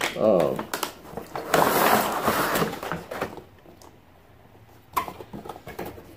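A cardboard toy box being opened and its plastic figure tray slid out: scattered clicks, then a rustling scrape of card and plastic lasting about a second and a half, and a sharp tap near the end.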